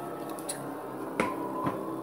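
A few short, sharp clicks or snaps, the loudest a little past halfway, over a steady background music drone.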